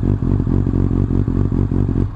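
Honda CBR600F inline-four idling steadily through a Martin aftermarket exhaust with a carbon-fibre silencer.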